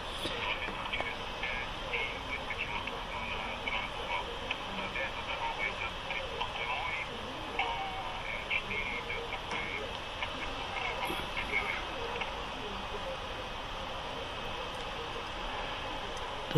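Steady in-car road and engine noise from a car driving slowly and coming to a stop, with a faint, indistinct voice underneath.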